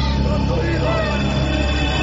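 A car engine running with a steady low rumble, with wavering voice-like sounds over it.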